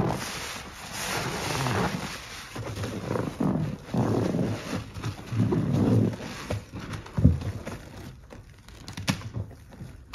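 Gloved hands sloshing through thick soapy water and squeezing a sponge: squelching, slopping foam and water in irregular swells. There is a sharp tap about seven seconds in, and the sound thins to scattered wet ticks near the end.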